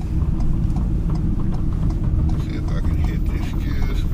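Steady low road and engine rumble inside a moving vehicle's cabin, with faint voices in the second half.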